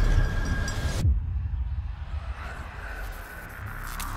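Film-trailer sound design: a low rumbling drone with a thin high tone that cuts off sharply about a second in, then a swell that builds toward the end.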